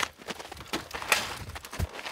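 A few sharp clicks and knocks with light rustling, and a low thump near the end: handling noise at the open engine bay of a snowmobile.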